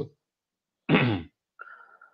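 A person clears their throat once, briefly, about a second in, with a falling pitch. A faint steady tone follows near the end.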